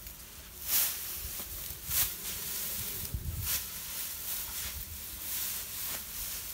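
Tall grass rustling and swishing as a person pushes and steps through it, in a few brief swishes about a second or more apart, with low thuds of footsteps underneath.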